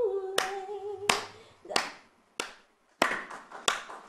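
A string of about eight sharp, irregularly spaced hand claps, each with a short ring after it. For the first second and a half they fall over a woman's held sung note, which then stops.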